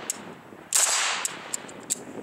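A single shot from an AK-pattern rifle about a third of the way in, loud and sudden, fading over about half a second, with a few faint clicks around it.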